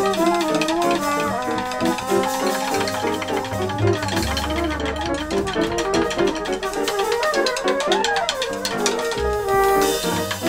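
Small acoustic jazz group playing a tune in 11: piano, upright bass and trumpet, with busy moving melody over a steady bass line.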